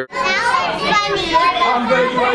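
A roomful of preschool children chattering and calling out at once, many high-pitched voices overlapping, with one child saying "That was funny."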